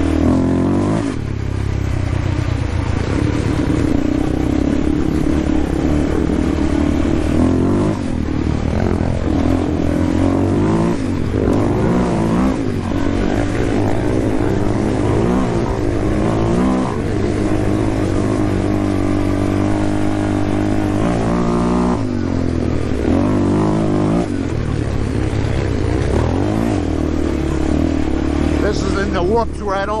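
Yamaha Warrior 350 ATV's single-cylinder four-stroke engine under hard riding, its pitch rising and falling as the throttle is worked on and off, with brief dips when it backs off.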